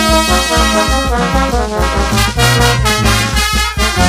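Peruvian brass band playing an instrumental passage: trumpets and trombones over sousaphone bass and timbales, with a steady pulsing bass beat.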